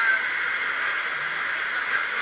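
Steady rushing hiss of running water in an echoing indoor water park, with no breaks or strikes.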